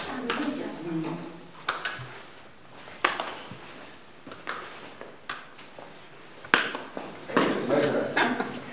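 Several people's voices with about five scattered sharp hand slaps as apples are tossed and caught around a circle.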